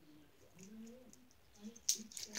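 A faint soft hum from a girl's voice, low and wavering, while slime is stretched by hand. Just before the end comes a sharp sticky click as the slime pulls apart.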